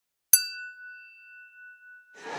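A single bright chime, struck once about a third of a second in and ringing on as it fades away.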